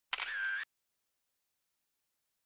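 A brief sound of about half a second just after the start, with a wavering high tone in it, then dead silence.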